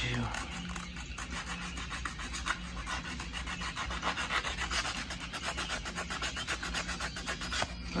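Coarse 80-grit sandpaper rubbed by hand in rapid back-and-forth strokes over the molded plastic of a steering wheel spoke, scuffing the slick surface so epoxy and paint will adhere.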